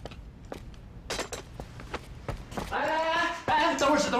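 A few faint scattered knocks, then from about two and a half seconds in a man calling out loudly in Mandarin.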